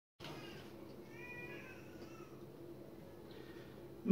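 Faint room tone with a faint, brief animal call about a second in and a weaker one around two seconds.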